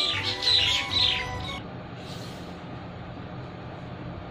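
Small birds chirping in a quick twittering run for about a second and a half, then fading to a faint steady background.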